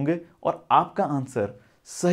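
A man speaking to camera in a small room, his voice running on in short phrases, with a quick sharp breath in near the end.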